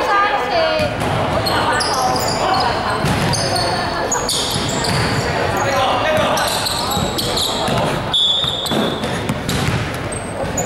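Basketball being dribbled on a gym floor while sneakers squeak in many short, high-pitched chirps, one held longer near the end. Players' voices carry in a large echoing hall.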